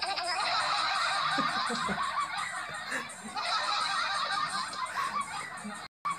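High-pitched laughter, cutting off suddenly near the end.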